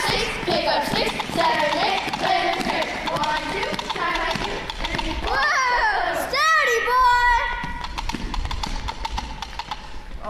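Children imitating horses: voiced whinnies rising and falling in pitch about six seconds in, over a clip-clop of hoofbeats, after a stretch of children's voices.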